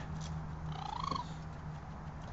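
A single short meow-like animal call, about half a second long, rising in pitch and then dropping, over a steady low hum. A couple of faint clicks come just before it.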